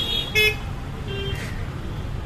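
Street traffic: a steady low rumble of engines with short car-horn toots, one about half a second in and another just after a second.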